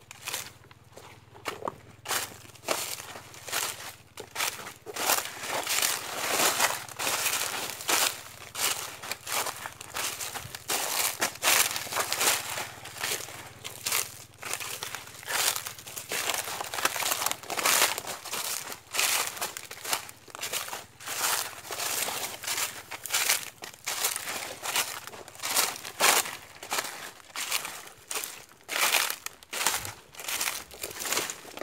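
Footsteps crunching through dry fallen leaves, a crackling crunch with each step at a steady walking pace.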